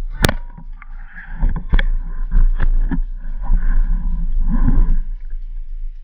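Speargun fired underwater: a single sharp crack about a quarter-second in, followed by a few seconds of irregular knocks and scraping as the speared fish struggles on the shaft and line.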